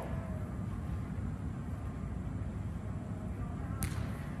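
A steady low rumble, with one sharp knock just before the end: a futsal ball being kicked.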